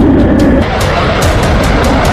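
Loud, dramatic background music with a fast beat over a heavy low rumble.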